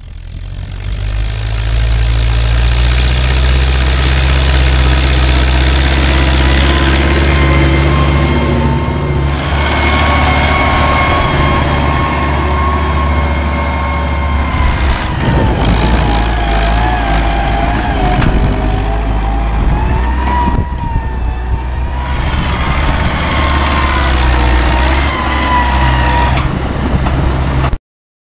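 Tractor diesel engine running steadily under load while pulling a plough through the soil, with a high whine that wavers in pitch over its low hum. The sound fades in at the start and cuts off suddenly just before the end.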